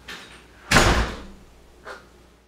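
A door slamming shut: one loud bang about three quarters of a second in, dying away quickly, followed by a lighter knock near the end.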